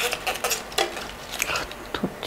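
Light clicks and rustling as tulip stems are handled and set into a vase.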